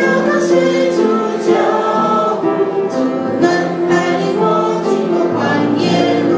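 Congregation singing a hymn together, a woman's voice leading at the microphone.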